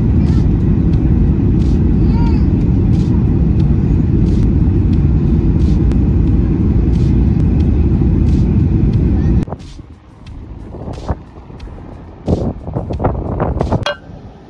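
Loud, steady rumble of a jet airliner's cabin noise, which cuts off abruptly about nine and a half seconds in. A much quieter outdoor stretch follows, with a brief voice-like sound near the end.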